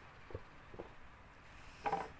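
A couple of faint clicks, then a short, sharp breath near the end, from someone whose mouth is burning from very hot chili chips.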